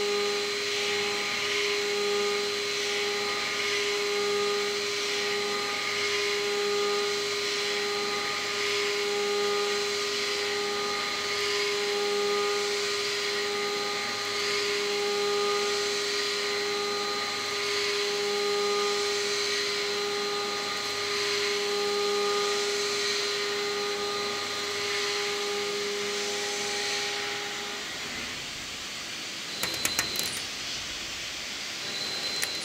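Solid carbide end mill on a CNC mill side-milling 1045 steel at 6100 RPM, a steady pitched cutting whine over coolant and chip hiss that swells and fades in a regular pulse as the tool circles the bore. The cutting tone stops near the end, and a brief sharp clatter follows.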